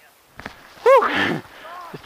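A short, loud, high-pitched shout that rises and falls, about a second in, from a paraglider pilot at launch. A couple of knocks come just before it and a noisy rush follows.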